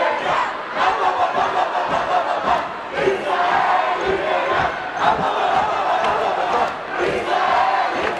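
Large crowd of teenagers shouting, cheering and chanting together, many voices overlapping, the din swelling and dipping.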